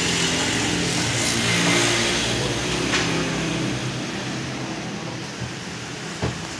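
A road vehicle's engine running nearby, building to its loudest about two seconds in and then slowly fading as it passes.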